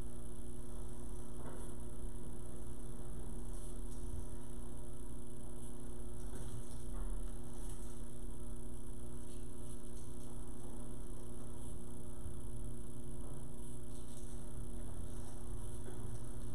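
Steady electrical mains hum with faint room noise.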